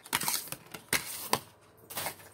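Handling noises from a nail stamper and its packaging being put away in a drawer: a short rustle, then several sharp clicks and knocks over about a second.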